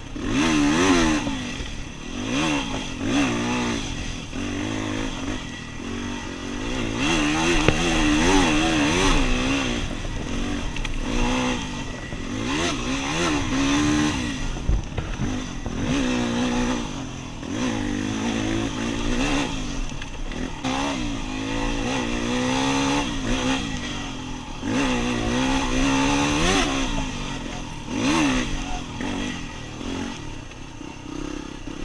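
Yamaha WR250R's single-cylinder four-stroke engine revving up and falling back over and over as the bike is ridden over rough dirt trail. The pitch climbs and drops every second or two.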